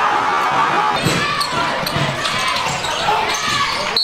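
Basketball bouncing on a sports-hall court a few times over steady crowd noise and shouting voices.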